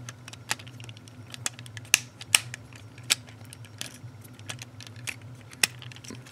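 Hard plastic parts of a TFC Divebomb transforming robot figure clicking and clacking as they are handled and fitted together. The clicks come at an irregular pace, and the two loudest fall about two seconds in.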